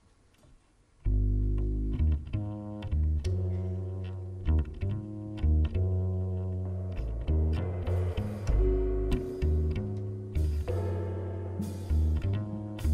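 Upright double bass played pizzicato, starting about a second in with a riff of deep, ringing notes that change every second or so.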